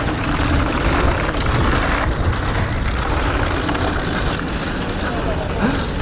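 Wind rushing over an action camera's microphone together with the rumble of a Haibike Dwnhll 8.0 downhill mountain bike rolling fast over a dry gravel dirt track. A laugh starts near the end.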